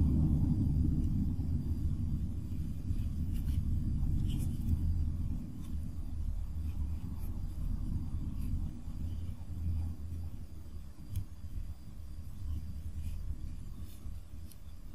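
A low background rumble that slowly fades, with a few faint small clicks and rustles of a needle and yarn being worked through crocheted fabric.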